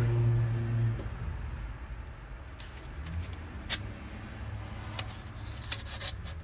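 A paper envelope being handled and slit open with a utility knife, giving a few light clicks and rustles. Under it runs a low steady hum that is loudest in the first second.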